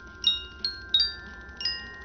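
Bright, bell-like chime tones struck one after another at irregular times, about five in two seconds. Each one rings on, so the notes overlap, like wind chimes in the film's soundtrack.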